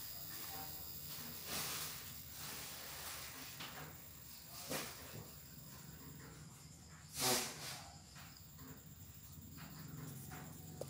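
Mitsuba 12 V brushless motor turning slowly with no load, running very quietly: a faint steady low hum with a thin high whine. Being brushless and without a reduction gear, it has nothing to make noise. A short breathy hiss comes about a second and a half in and a louder one about seven seconds in.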